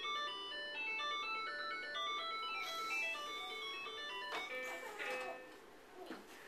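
Electronic toy playing a simple tinny tune: a quick run of single beeping notes stepping up and down, fading out near the end.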